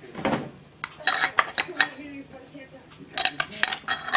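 Metallic clinks and clicks of a DeWalt DWC410 tile saw's parts and its diamond blade being handled, in two short clusters, about a second in and again near the end.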